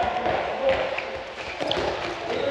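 Handball bouncing and rolling on a wooden sports-hall floor, a few light knocks.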